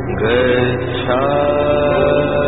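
A single voice chanting melodically in the style of Buddhist devotional chanting, sliding up into long held notes twice, over a steady musical drone.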